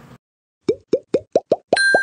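Cartoon 'bloop' pop sound effects: six short pops, each rising in pitch, coming quicker and quicker, followed by a bright, clear ding near the end.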